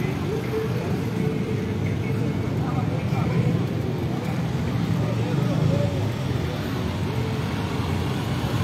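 Steady street traffic noise from cars and motorcycles running, with faint voices of people on the street mixed in.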